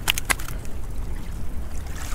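Water lapping and trickling against the hull of a small boat at sea, over a steady low wind rumble. Two short sharp clicks come just after the start.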